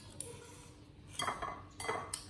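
A metal spoon clinking and scraping against a ceramic bowl: a light tap just after the start, then two short, louder bursts of clinks about a second in and near the end.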